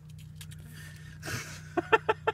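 A man's short laugh, a few quick chuckles starting near the end, after a breathy exhale. A steady low hum runs underneath inside the car's cabin.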